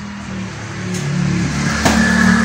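A motor running with a steady low hum that grows gradually louder, and one sharp click near the end.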